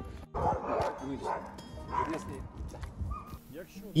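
A dog barking a few times.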